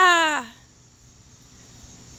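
A woman's drawn-out, sing-song call, falling in pitch and ending about half a second in, followed by quiet outdoor background.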